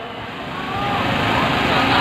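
Outdoor background noise: a rushing hiss that gradually swells louder, with faint voices mixed in.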